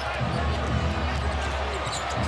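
A basketball being dribbled on a hardwood court over the steady rumble of an arena crowd.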